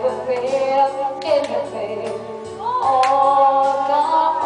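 A woman singing a slow song into a microphone over backing music, her voice bending between notes and then holding one long note in the second half.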